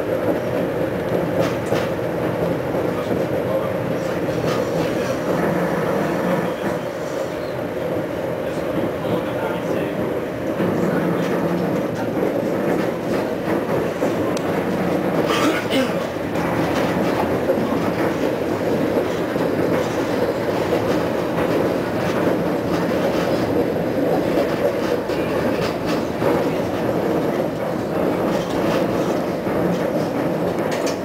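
Konstal 105Na tram heard from inside while running at speed: a steady rumble of the car and its motors, with wheels clicking over rail joints. There is a brief sharper, higher sound about halfway through.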